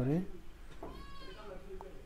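An animal call in the background, about a second long, high-pitched and arching up then down in pitch.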